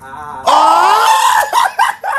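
Young men screaming with laughter. One long, high shriek with a slowly rising pitch starts about half a second in and breaks into short bursts of laughter near the end.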